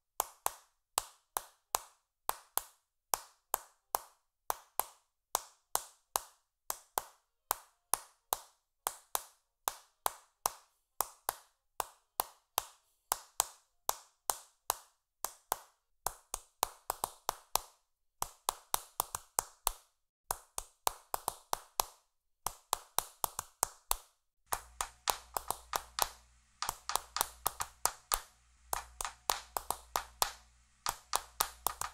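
Hand claps in a steady rhythm, about two a second at first, coming thicker and closer together from about halfway through. A low hum comes in underneath near the end.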